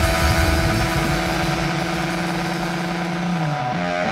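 Rock band playing instrumentally, led by an overdriven electric guitar holding one long sustained note that bends down near the end, over bass and drums.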